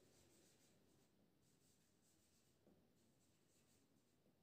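Near silence, with a marker writing faintly on a whiteboard.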